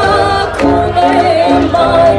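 Balkan brass band playing the sevdah song live, a woman singing the melody into a microphone over sousaphone bass, horns and drums.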